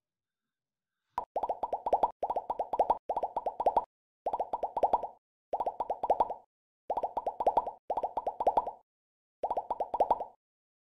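Animation sound effect for a subscribe button. After about a second of silence comes a click, then repeated short runs of rapid popping ticks, about one run a second, each lasting under a second.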